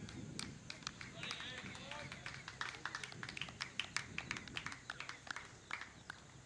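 Faint open-air cricket field sound: distant voices calling across the ground, then a rapid, irregular run of sharp clicks through the second half.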